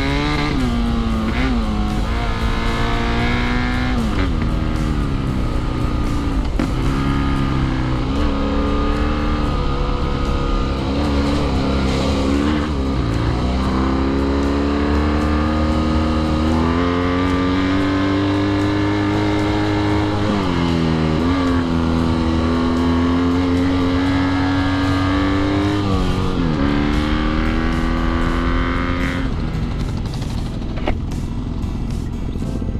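BMW F800GS parallel-twin engine pulling along a dirt track, its pitch climbing and then dropping sharply several times as the rider works the throttle and shifts gears, with low wind rumble on the microphone. Near the end the engine note falls away as the bike slows.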